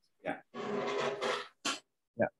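A brief spoken 'yeah' over a video call, then about a second of breathy, noisy sound with a faint voice-like pitch in it, ending in a short hiss.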